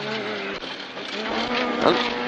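Honda Civic rally car's engine heard from inside the cabin: the revs drop as the car slows for a right-hand junction, then climb steadily from a little past halfway as it accelerates out of the turn.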